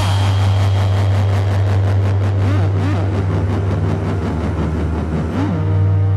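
Hardcore electronic music in a breakdown: a loud, sustained deep bass drone with a rapid fluttering texture and a few short swooping synth glides. About five and a half seconds in, a held synth chord comes in over the drone.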